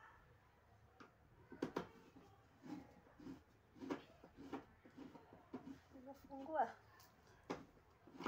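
Scattered light clicks and knocks of hands working on the plastic and metal parts of a dismantled washing machine.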